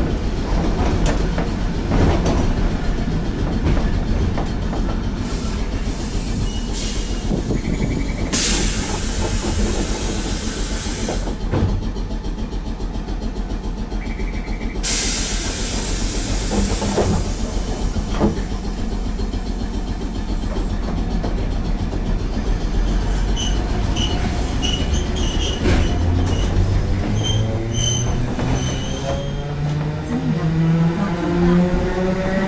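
A Mobo 621-type tram heard from inside its cab while running: a steady low rumble of wheels on rail with scattered clicks over the track, and two spells of hiss a few seconds long. Near the end a rising whine sets in as it gathers speed.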